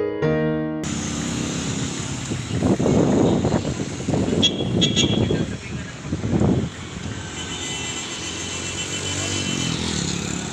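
Piano music that stops under a second in, then street traffic: motor vehicles passing with engine noise swelling and fading between about two and seven seconds in, and a brief horn toot near the middle.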